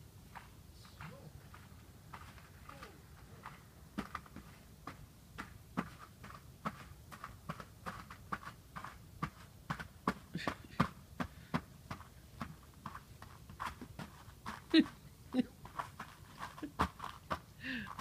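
Footsteps crunching and breaking through a crust of ice on snow-covered grass. The crunches are sparse at first, then come quicker and louder, two or three a second, from a few seconds in.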